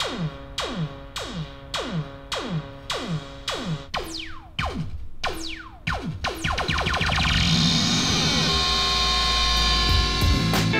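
Moog DFAM analog percussion synthesizer playing a repeating sequence of synth hits, each a sharp strike whose pitch drops quickly, a little under two a second. About six seconds in, as a knob is turned, the hits speed up and blur into one continuous, louder buzzing drone.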